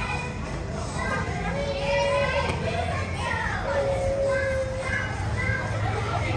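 Young children's voices: several small kids calling out and chattering over one another, with a couple of long drawn-out high calls.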